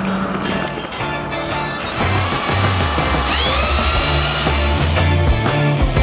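Background music with a steady, stepping bass line and a sliding guitar-like glide about halfway through.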